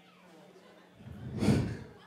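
A man's sigh into a close microphone: one breathy exhale lasting about a second, swelling and fading near the middle.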